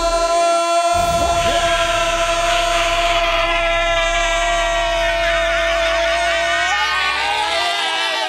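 A high voice holding one long note for about seven seconds, wavering and breaking off near the end, over background music with a steady bass.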